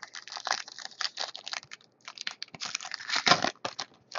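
Foil wrapper of a trading-card pack crinkling and tearing as it is opened by hand, in irregular bursts with a short pause about two seconds in.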